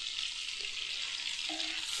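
Butter melting and sizzling in a hot nonstick frying pan: a steady soft frying hiss.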